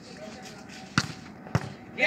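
A volleyball being struck by hand twice, about half a second apart, as sharp slaps; the first, about a second in, is the louder.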